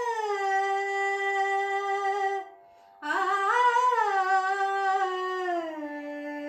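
A woman's voice singing a slow Carnatic devotional melody without words: long held notes that slide downward, a short pause about two and a half seconds in, then a phrase that rises and falls before settling on a lower held note.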